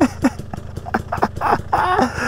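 Enduro dirt bike engine idling as a low, steady rumble, with short bursts of laughter over it near the start and again near the end.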